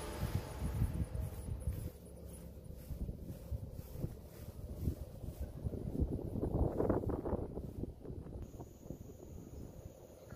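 Footsteps and low rumbling outdoor noise on a handheld phone microphone during a walk around a house, with a louder noisy patch about two-thirds of the way in. A faint, steady high tone comes in near the end.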